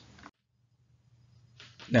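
Near silence in a pause between sentences of a man's talk, with speech starting again near the end.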